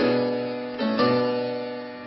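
Chords played on a clavecin-piano forte, an early keyboard whose hammers strike the strings but which has a bright, harpsichord-like tone. There is a chord at the start and two more about a second in, each one dying away.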